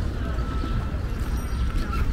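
Carriage horse's hooves clip-clopping on the asphalt park drive as a horse-drawn carriage passes, over a steady low rumble of background noise.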